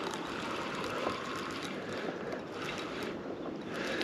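Steady lakeside wind and water noise on the microphone, with a few faint scattered clicks.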